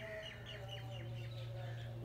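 A bird calling in a quick run of short, falling chirps, about four or five a second, over a steady low hum.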